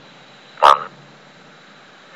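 Computer text-to-speech voice (Microsoft Mary) saying the single English word "net" once, short and clipped, about half a second in.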